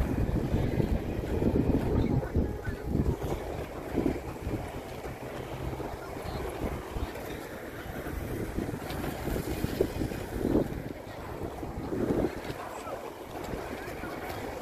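Wind buffeting a phone microphone outdoors: an irregular low rumble that swells and drops in gusts.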